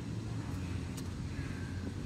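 Steady low rumble of distant city traffic, with a short click about a second in and a faint thin tone in the second half.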